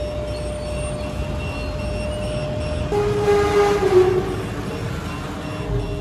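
Car carrier trailer's upper deck being raised by its hydraulic lift, with a steady low running rumble and a thin steady whine. About three seconds in the whine stops and a louder wavering tone sounds for about a second.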